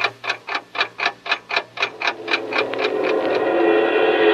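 Radio-drama sound effect of the time bomb's alarm clock ticking, about four ticks a second. About halfway through, music swells in and the ticking fades under it.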